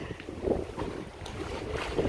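Wind buffeting the microphone: a steady low rumble with no clear events in it.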